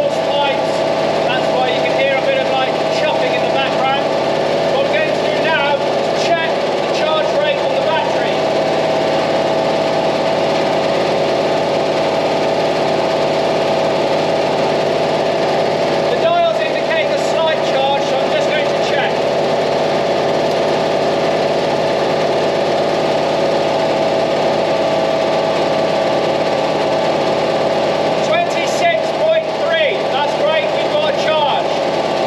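Panhard AML 60 armoured car's air-cooled flat-four petrol engine running at a steady idle.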